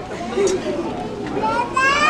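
Children chattering in the audience, with one child's high-pitched call rising in pitch near the end.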